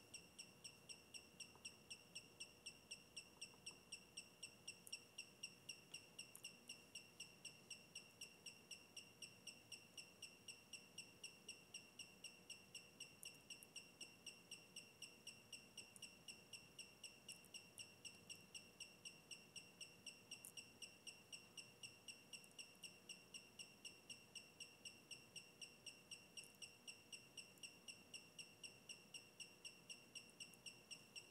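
Brushless gimbal motors on an Alexmos SimpleBGC-controlled 3-axis gimbal giving off a faint, high-pitched chirping, regular at roughly four chirps a second, as the controller drives them through automatic PID tuning of the yaw axis.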